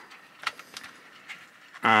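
Faint handling noise of a cardboard trading card box turned in gloved hands: one light click about half a second in and a few softer ticks after, then a man's "um" near the end.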